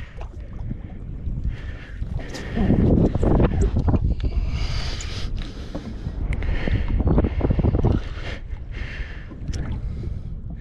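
Wind buffeting the microphone on open water, a low rumble that swells louder about three seconds in and again about seven seconds in.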